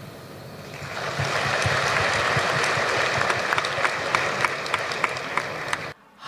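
Audience applauding: the clapping swells about a second in, holds steady, and is cut off abruptly near the end.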